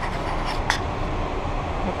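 Steady rumble and hiss of a crowded underground subway platform, with one sharp click about two-thirds of a second in.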